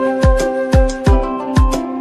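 Background music with a steady deep beat about twice a second under sustained melodic tones.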